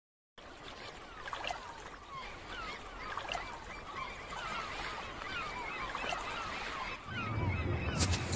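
Seagulls calling over and over above a steady wash of ocean surf. A louder low hum comes in about a second before the end.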